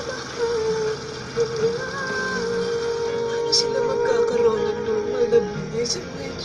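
Karaoke backing music played from a screen's speaker and picked up by a phone, with a wavering melody line over held chords. Near the end the track changes to the next song.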